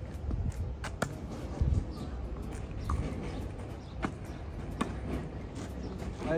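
Tennis ball being struck by rackets and bouncing on the court during a rally: a handful of sharp, spaced pops, the strongest pair about a second in, over faint outdoor background noise.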